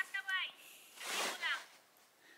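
Two brief, faint bursts of a person's voice without clear words, the second breathier than the first, with near silence near the end.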